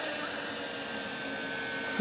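Small 450-size quadcopter hovering at a distance in position hold: a steady motor-and-propeller hum with a thin high whine.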